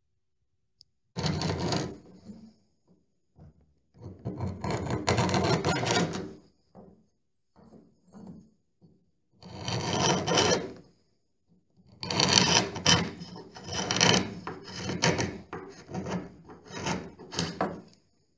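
A metal shave hook scraping old paint off the edge of a wooden door in long strokes, then in quick short strokes for the last six seconds or so, rasping through the dry, flaky paint down to bare wood.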